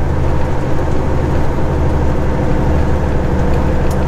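Semi-truck's diesel engine and road noise, a steady low drone heard inside the cab while cruising on the highway.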